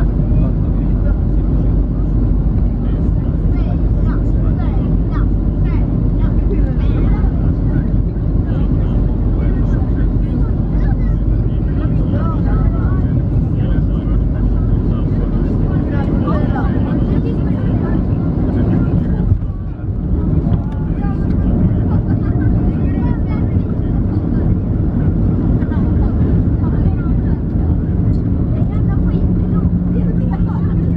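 Boeing 737-700 cabin noise heard from a window seat over the wing during landing: a steady rush of airflow and the CFM56 engines on final approach. About two-thirds of the way in the noise briefly dips, then a low steady hum joins as the jet rolls out on the runway with its spoilers raised.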